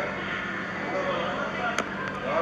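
Faint voices from a TikTok video playing on a phone, with a single sharp click near the end.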